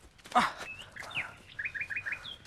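Birds chirping: scattered short chirps, then four quick chirps in a row near the end. A short, loud harsh sound about a third of a second in is the loudest thing heard.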